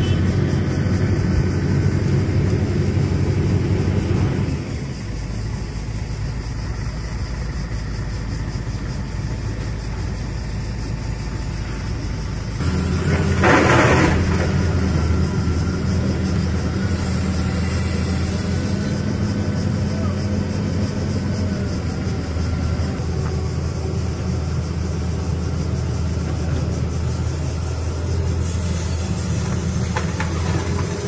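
Heavy diesel engines of a tracked excavator and a dump truck running steadily, with a brief loud noisy burst about thirteen seconds in.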